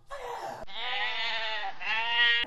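Long, wavering bleating: an animal's drawn-out call in about three stretches joined together, growing louder toward the end.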